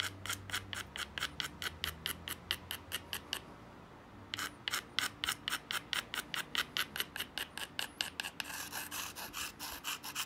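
Edge of an obsidian knife blade being rubbed with a stone abrader in quick, even strokes, about five a second. The strokes pause for about a second near the middle, then resume and grow denser near the end.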